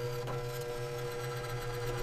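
Steady machine hum with several held tones, even in level throughout.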